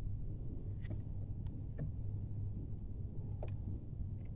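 A steady low hum, with a few faint sharp clicks scattered through it.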